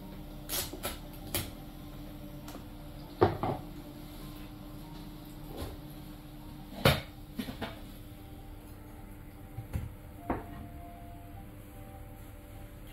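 Scattered clicks and knocks of dishes, utensils and crab shells being handled at the table, with two louder knocks about three and seven seconds in, over a faint steady hum.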